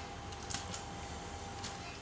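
A few faint clicks of Lego Technic plastic parts being worked by hand, over a steady low room hum.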